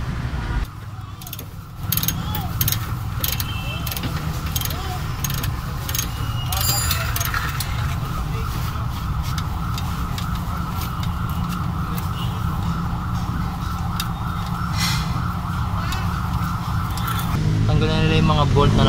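Workshop noise during car suspension work: a steady mechanical hum with a held tone, and many short metallic clinks of hand tools and loose parts, with faint voices in the background.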